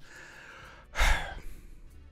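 A man sighs into a close microphone: a breathy exhale about a second in that trails off.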